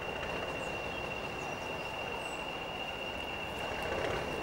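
Small four-wheeled diesel shunting locomotive running slowly as it hauls a short train along the track towards the listener, with a steady high whine over the engine noise.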